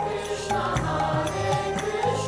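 Devotional kirtan: voices chanting a mantra to a steady percussive beat.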